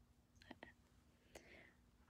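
Near silence: room tone, with a few faint clicks around the middle.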